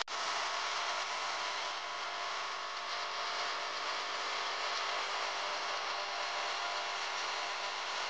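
Beef and onion masala sizzling steadily in an aluminium pressure-cooker pot on a gas burner as it is fried before water goes in.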